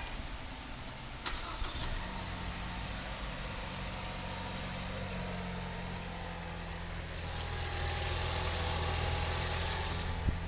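Two sharp clicks, then the Ford Escape's 2.0L EcoBoost four-cylinder engine starts about two seconds in and settles into a steady idle, growing a little louder near the end.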